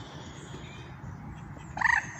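A single short, harsh bird call near the end, loud over faint bird chirping and steady outdoor background.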